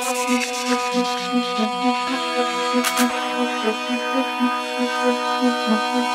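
Breakdown in a tech house track: the kick drum and bass drop out, leaving held synth chords over a pulsing note about three times a second, with the chord shifting about two seconds in.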